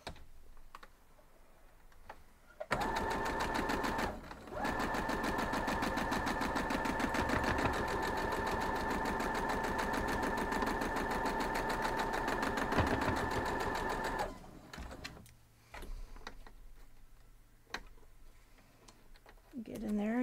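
Domestic electric sewing machine stitching a seam at steady speed, its motor whine under rapid needle strokes; it starts about three seconds in, halts for a moment soon after, then runs on for about ten seconds before stopping. A few light clicks follow.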